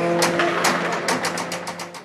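Pep band music: brass holding a chord over rapid drum and cymbal strokes that quicken in the second half, fading out near the end.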